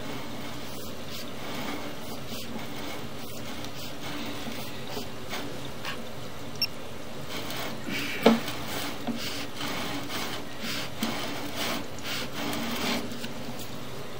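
Sewer inspection camera's push cable being pulled back up the line: a steady rubbing and rasping with a few sharp clicks, the loudest about eight seconds in.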